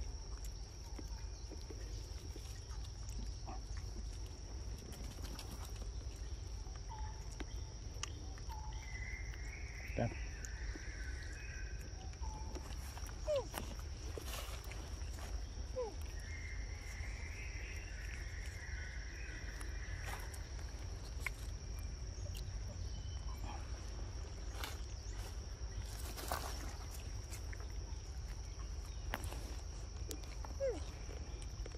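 Steady high-pitched insect drone in forest undergrowth, with scattered sharp clicks and a few short squeaks as young macaques eat mango.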